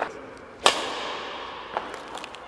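Badminton racket striking a shuttlecock in a backhand drill: one sharp crack about two-thirds of a second in, with a short hall echo after it, and a fainter tap near the end.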